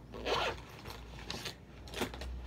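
A few short rasping rustles of hands searching through a cardboard box with a plastic bag inside.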